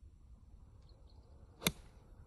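A 50-degree wedge striking a golf ball off turf: one sharp, crisp click about one and a half seconds in.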